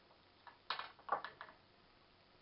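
A quick cluster of short clicks and rattles, starting a little after halfway, as a power cord and its plastic plug are handled.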